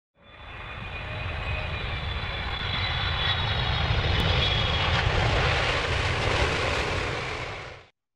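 Airplane engine noise, a steady roar with a faint high whine, swelling over the first few seconds and fading out near the end.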